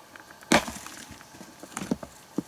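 A heavy flat stone set down hard on other stones: one loud knock about half a second in, then a few lighter knocks and scrapes of stone near the end.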